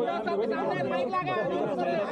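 Overlapping voices of several men talking at once in a crowd, an unbroken babble of speech with no single clear speaker.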